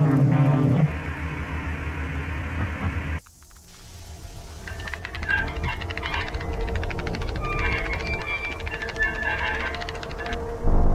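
Eerie soundtrack of an animated outro: a low droning hum that cuts off suddenly about three seconds in, then crackling TV-static noise with scattered warbling tones that grows louder.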